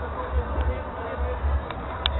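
Faint background voices over a steady low rumble, with a few light clicks.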